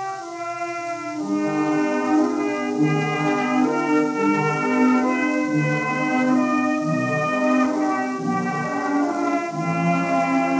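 A 1917 acoustic-era 78 rpm shellac disc recording of a light orchestra playing a medley of show tunes. The sound is thin and lacks bass, over a steady surface hiss. The full orchestra comes in louder about a second in.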